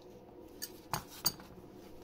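A steel adjustable wrench clinking against a metal suspension-fork tube as it is handled and put aside: three short metallic clinks, the last the loudest.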